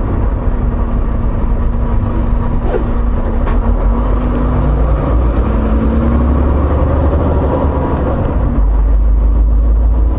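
Semi truck's diesel engine running steadily with road noise, heard from inside the cab while driving: a strong low drone that holds even throughout.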